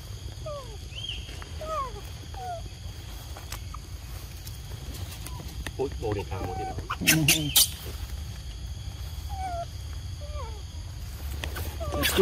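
Young macaques calling with short, falling squeaky calls, several in quick succession near the start and a few more near the end. A brief voice and a couple of sharp clicks come about six to seven seconds in.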